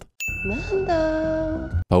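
TVSins' sin-counter 'ding' sound effect: a single held bell-like ding marking another sin added to the tally. It starts just after a short silence and cuts off just before the end, over a lower held pitched sound from the show's soundtrack.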